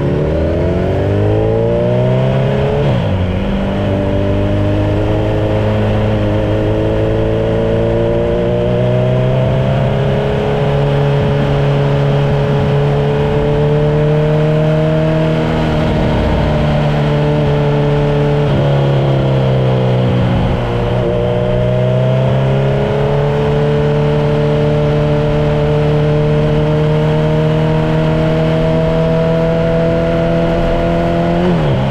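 Kawasaki Z900's inline-four engine pulling steadily on the road. Its pitch climbs slowly and then falls back several times, a few seconds in, about a third of the way through, around halfway and twice more past the middle, as the throttle is rolled off or a gear is changed.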